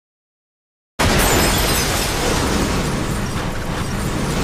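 Complete silence for about a second, then a sudden loud, harsh rush of noise that carries on steadily without a break.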